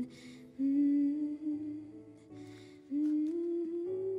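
Song soundtrack: a voice humming long held notes, with audible breaths between them, over soft sustained accompaniment.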